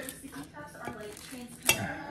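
Small hard items being handled and set down, light clattering with one sharp click a little before the end.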